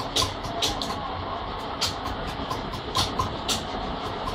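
A steady mechanical rumble with about half a dozen sharp, irregularly spaced taps over it, the sound of hand work on stone amid running machinery.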